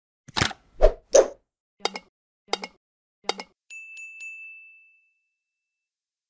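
Animated logo sound effects: three quick pops, then three short clicks about two-thirds of a second apart, then a single high bell-like ding that rings for about a second and fades.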